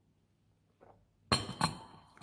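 White ceramic coffee mug set down on the table: two sharp clinks with a short ring, about a third of a second apart, near the end.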